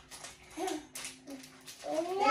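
Two short, soft vocal sounds like hums from a person, about half a second apart, over a faint steady low hum.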